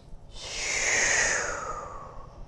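A long audible exhale, a deep cleansing breath let out through the mouth, swelling and then fading over about a second and a half.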